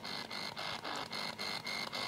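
Ghost-hunting spirit box sweeping through radio frequencies: rapid choppy static, about eight clicks a second, over a faint steady high whine.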